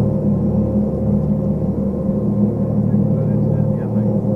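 Ship's engine running steadily on deck, a low, even drone.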